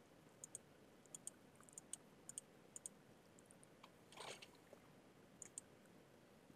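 Near silence broken by faint, scattered clicks of a computer mouse and keyboard while a value is entered into a settings field. There is a brief soft rustle about four seconds in.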